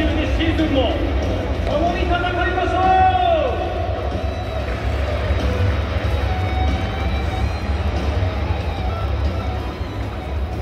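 Stadium PA music in a domed ballpark over crowd chatter, with a steady low rumble underneath. The music's gliding, pitched lines are strongest in the first few seconds and end with a long falling slide; fainter tones carry on after that.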